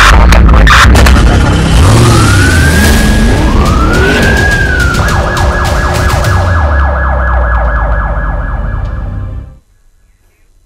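Siren sound effects in a dramatic title sting: a loud hit, two rising-and-falling wails, then a fast warbling siren over a low rumble, cutting off suddenly near the end.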